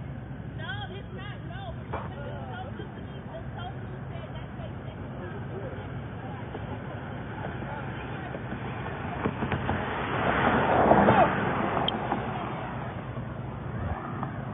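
A vehicle engine running steadily under faint distant voices, with a louder rush of noise about ten to eleven seconds in.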